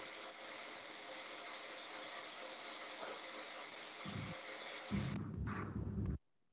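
Open-microphone room noise on a video call: a steady faint hiss with a light hum. Low muffled bumps come about four seconds in and again near the end.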